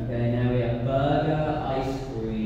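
A man's voice held on one low, steady pitch for over a second, then trailing off: a long, drawn-out thinking 'hmmm' rather than words.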